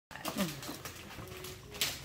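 A dog gives a short whine that falls in pitch, about a third of a second in. Near the end there is a brief rustle of wrapping paper.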